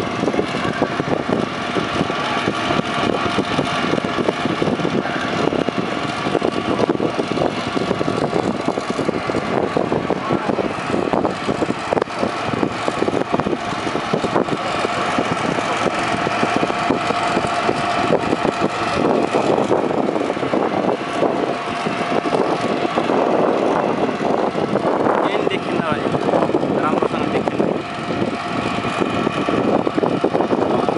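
Fire engines running steadily amid the din of a large fire, with people's voices in the background.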